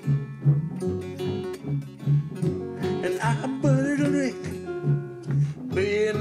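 Country-blues string-band jam: strummed acoustic rhythm guitar over a washtub bass plucking a steady beat about twice a second, with a slide diddley bow gliding between notes about halfway through.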